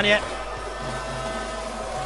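Steady background hum of an indoor basketball arena: an even noise with faint sustained tones, no distinct events, and a man's voice ending just at the start.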